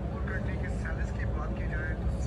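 People talking indistinctly over a steady low rumble of traffic.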